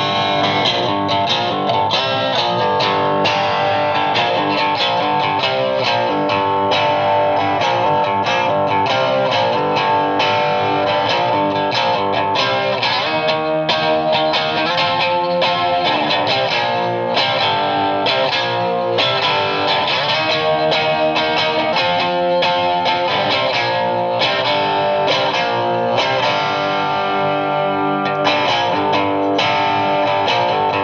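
1958 Danelectro U2 electric guitar, amplified, played on its bridge lipstick pickup alone: a continuous run of picked single notes and chords with a few bent notes.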